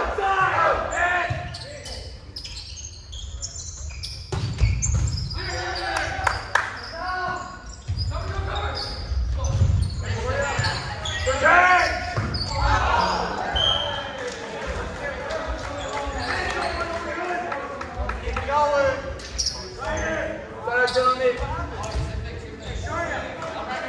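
Volleyball play in a gymnasium: repeated sharp hits of the ball and the ball bouncing on the hardwood court, echoing in the large hall.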